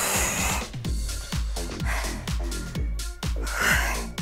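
Upbeat electronic workout music with a steady beat of about two kicks a second, over which a woman breathes out hard with the jackknife crunches, loudest at the start and again near the end.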